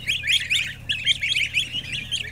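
A crowd of goslings and ducklings peeping continuously, many short high overlapping calls a second, over the steady low hum of an exhaust fan.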